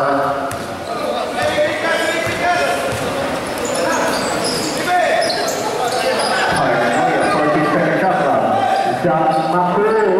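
A basketball bouncing on a concrete court, with people's voices, shouting and chatter, going on throughout.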